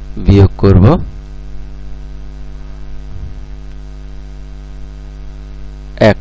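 Steady electrical mains hum with a buzz of evenly spaced overtones, unchanging throughout, with a brief spoken word near the start.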